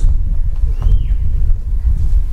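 A loud, steady low rumble on the recording, with a faint short falling tone about a second in.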